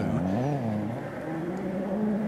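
Ford Fiesta RS WRC rally car's turbocharged four-cylinder engine at speed, its note dipping and rising quickly in the first second as the driver works the throttle, then holding steadier.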